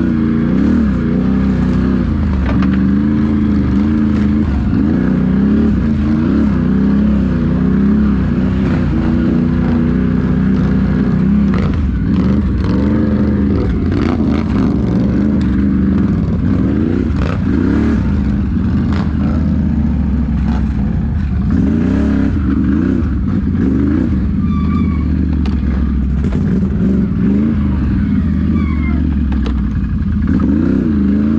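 Can-Am Renegade XMR ATV's V-twin engine running under way on a trail, the throttle rising and falling in repeated revs. A few sharp knocks come in the middle.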